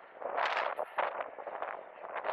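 Wind buffeting the microphone and inline skate wheels rolling on asphalt while skating at speed, coming in uneven surges, the strongest about half a second in.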